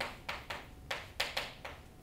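Chalk tapping and scratching on a chalkboard while writing, heard as a run of short sharp taps, about six or seven in two seconds.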